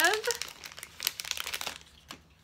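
Blind-bag packaging crinkling as it is torn open and handled, a run of quick crackles that thins out and fades near the end.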